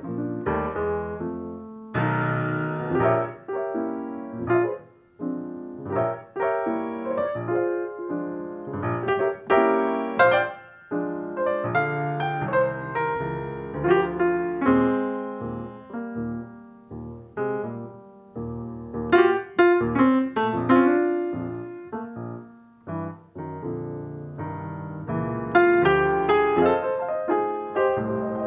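Grand piano playing a jazz passage of struck chords and runs, the phrases swelling and falling away in loudness.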